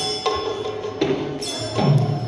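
Live Manipuri sankirtan music: large brass hand cymbals clashing several times, each strike leaving a long bright ring, with a drum beating low underneath near the end.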